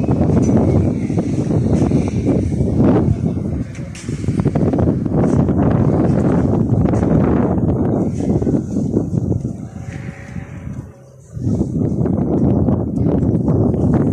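Wind buffeting the phone's microphone: a loud, gusty rumble that rises and falls, easing off briefly about eleven seconds in.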